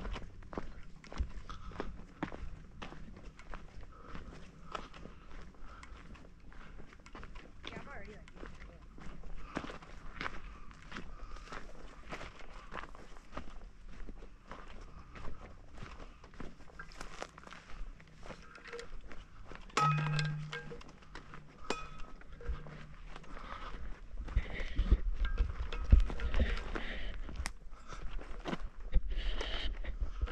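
Footsteps crunching on a dry dirt trail, a steady run of short steps. A brief low hum comes about two-thirds in, and near the end low buffeting on the microphone is the loudest sound.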